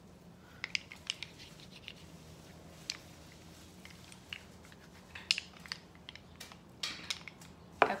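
Light, scattered clicks and small knocks of oily hands handling and rubbing wax taper candles, over a faint steady hum.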